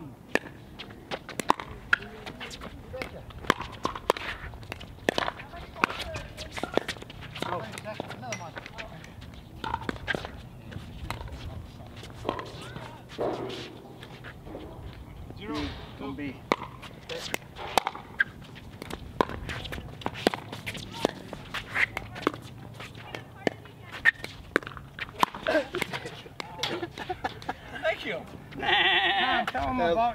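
Pickleball paddles striking a plastic ball: sharp pops repeating irregularly through the rallies, with short shouts and voice sounds between shots. A louder burst of voice, like laughter, comes near the end.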